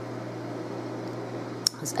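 Steady low electrical hum with a faint hiss, and a single short click near the end.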